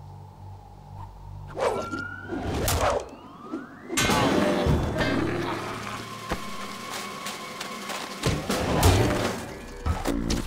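Cartoon soundtrack of music and slapstick sound effects: sudden whooshing bursts, a rising whistle-like glide just before four seconds in, then a long stretch of dense noise, with a loud crash about nine seconds in.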